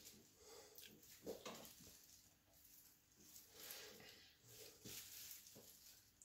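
Near silence: quiet room tone with a few faint, brief soft noises.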